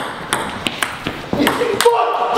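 Table tennis ball clicking back and forth off paddles and the table in a fast rally, several sharp ticks in quick irregular succession.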